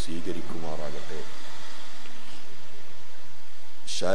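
A man's voice preaching for about a second, then a pause of nearly three seconds filled only with steady hiss, before he speaks again at the very end.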